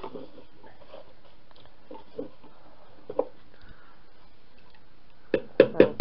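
A few faint clicks, then near the end a quick run of sharp knocks with a short ring, like hard things being handled in a kitchen.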